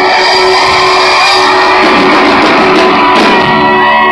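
Live rock band playing loud, led by a distorted electric guitar over drums.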